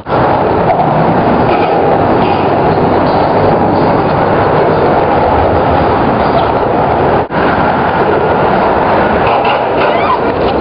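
Loud, steady rumble of vehicles crossing a bridge overhead, heard from beneath it, with a momentary break about seven seconds in.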